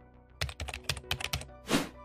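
Computer-keyboard typing sound effect: about ten quick keystrokes in a second, one for each letter of a word typed into a search box, followed by a short whoosh. Faint background music runs underneath.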